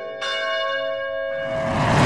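Opening theme music with bells. A bell is struck about a quarter of a second in and rings on, then a noisy wash swells up to the loudest point at the end.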